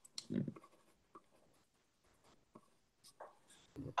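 Faint scattered scratches and light clicks, like a pen writing, in a quiet small room. A brief low voice sounds just after the start.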